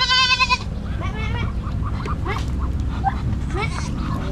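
Goat bleating: a loud, wavering bleat at the start, then a second, weaker bleat about a second in.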